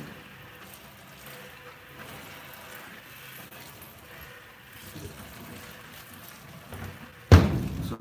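Hand-milking a Jersey cow: faint streams of milk squirting from the teats into a plastic bucket. A sharp, loud thump comes near the end.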